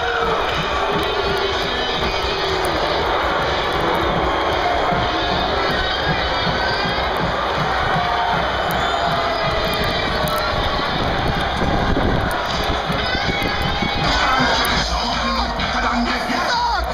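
A steady stadium din of crowd noise with music playing through it, and a low rumble of wind buffeting the microphone.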